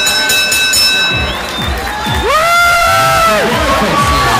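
A bell rings for about a second as the boxing round ends, then loud music with a pounding bass beat plays over the hall's sound system, with crowd noise underneath.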